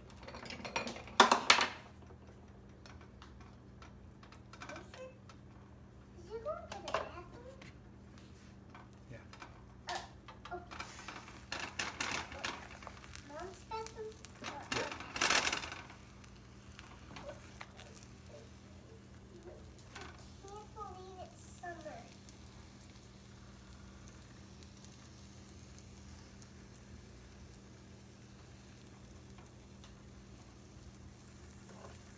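Eggs faintly sizzling in a nonstick frying pan, with the clatter of the pan lid about a second in. A spatula knocks and scrapes against the pan, loudest about fifteen seconds in. Between these come a few short, wavering voice-like sounds.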